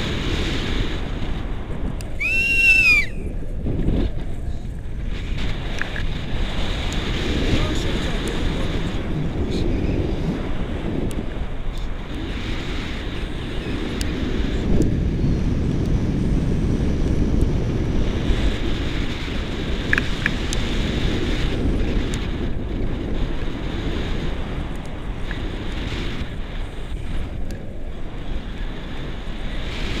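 Wind rushing over the camera microphone in flight under a tandem paraglider, a steady low rush that swells and eases. A brief high gliding tone sounds about two seconds in.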